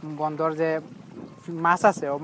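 A man's voice in drawn-out, sing-song phrases, with a short pause in the middle.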